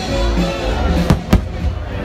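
Aerial fireworks shells bursting: two sharp bangs about a second in, a quarter of a second apart, over loud show music.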